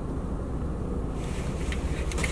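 Steady low rumble of background noise inside a car, with a faint hiss that grows a little about a second in.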